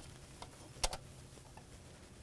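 Sharp metallic click of a hand tool a little under a second in, with a softer tick before it, over a faint steady hum, as the oil filter housing bolts are run down to bottom out.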